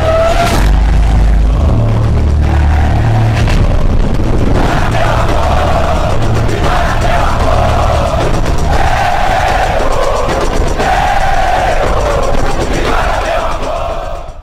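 Loud outro music with a pulsing bass. A heavy hit lands about half a second in, and a held melody line comes in around five seconds.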